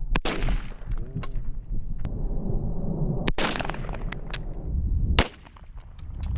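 AR-15 rifle fired in single shots: three loud cracks a few seconds apart, plus a fainter crack, with lighter metallic clinks between them.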